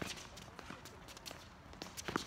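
Tennis rally on a hard court: a sharp racket-on-ball hit right at the start, then lighter taps of the ball and players' footsteps on the court.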